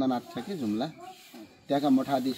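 A man talking in Nepali, with a short pause a little after the middle.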